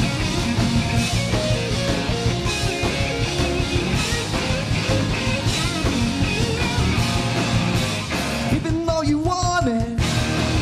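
Live rock band playing: electric guitars, bass and drums. The sound thins out for about a second near the end, where a wavering, bending line stands out.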